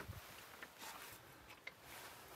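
Near silence: faint outdoor background with a couple of faint ticks.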